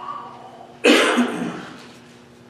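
A man coughs once, loud and abrupt, close to a microphone, about a second in; the cough dies away over about half a second.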